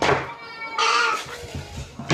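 An upset young child letting out a short, high-pitched whining cry about a second in.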